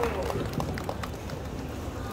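Steady outdoor street background noise with a few light, scattered hand claps.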